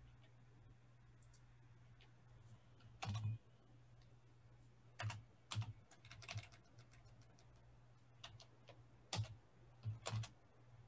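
Computer keyboard typing: faint, scattered key presses in small irregular runs, starting about three seconds in.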